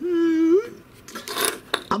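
A man's drawn-out hesitation sound for about half a second, rising at its end, then small metal parts of a potentiometer clinking and scraping as they are picked up from a wooden workbench, with a sharp click just before the end.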